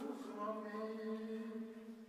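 A man's voice chanting Sikh scripture through a microphone, holding one drawn-out, nearly steady note that trails off near the end.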